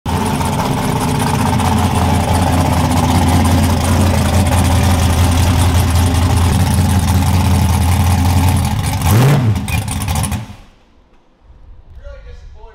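Fox-body Mustang drag car's engine running steadily at low speed as the car rolls, with one quick rev blip about nine seconds in, then the sound drops away.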